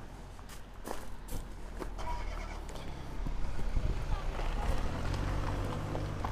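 A car engine running nearby, a low rumble that gets louder about halfway through, with faint voices in the background.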